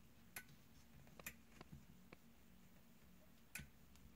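Faint clicks and taps of fingers nudging a cabinet door at its edge beside the door's light switch, three sharper clicks standing out among a few softer ones.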